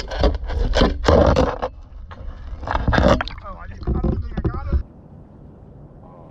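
Water noise heard by a camera submerged in shallow pond water: a dense, muffled rumble and sloshing with knocks. It cuts off suddenly about five seconds in, leaving only a faint background.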